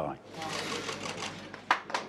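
A small crowd applauding: a dense patter of many claps that turns into more distinct separate claps about a second and a half in.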